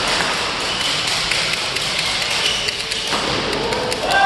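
Sharp taps of badminton rackets hitting shuttlecocks, scattered and irregular, from games on several courts, over the steady background noise of a large sports hall.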